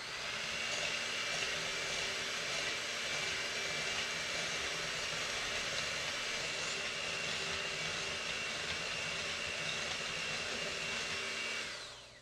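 Electric hand mixer with regular beaters running at a steady speed, whipping heavy cream in a glass bowl; the motor winds down and stops just before the end.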